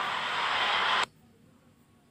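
Steady hiss of static that cuts off suddenly about a second in, leaving near silence.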